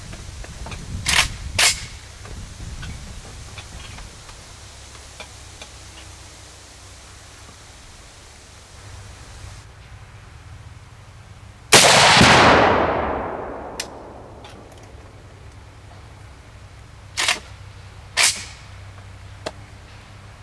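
A single shot from a 7.62x54R VEPR semi-automatic rifle about twelve seconds in, merged with the boom of a Tannerite binary-explosive target detonating downrange, the rumble dying away over about two seconds. A few short sharp clicks come twice early on and twice near the end.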